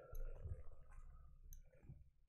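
A few faint clicks over quiet room tone, with a brief soft swell just after the start.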